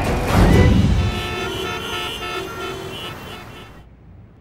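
A soundtrack sting: a heavy low boom, then a chord of several steady held tones that fades out over about three seconds and stops abruptly.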